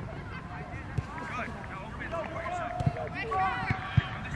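Distant calls and shouts of several players and spectators across an outdoor soccer pitch, overlapping. There are a few short dull thumps: one about a second in and two more near the end.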